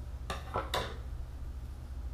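Two short clicks about half a second apart as a pair of scissors is handled and laid down on a wooden desk.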